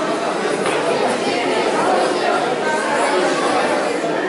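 Indistinct chatter of many voices overlapping in a large hall, at a steady level.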